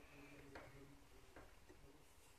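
Near silence: faint room tone with two faint ticks, about half a second and a second and a half in.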